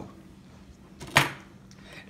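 A single short, sharp tap about a second in, against quiet room tone.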